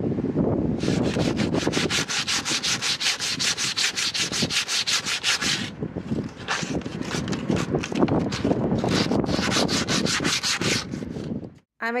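Sandpaper rubbed by hand along the edge of a plywood frame in quick, even back-and-forth strokes, about five a second, with a short lull about six seconds in.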